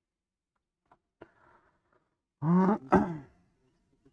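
A short, loud wordless vocal outburst from a man, in two quick parts, about two and a half seconds in, after a couple of seconds of quiet with a faint click.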